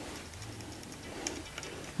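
Faint rustling of a lined fabric drawstring bag as hands open it, with a few light ticks in the second half.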